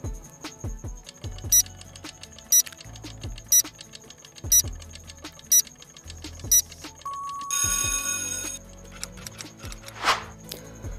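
Quiz countdown-timer sound effect over background music: six short beeps about a second apart, then a steady tone and a brief ringing alarm as time runs out.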